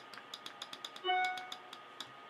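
A computer's new-email notification chime sounds once about a second in, a short pitched tone that fades over about half a second. Light computer keyboard clicks tick away around it.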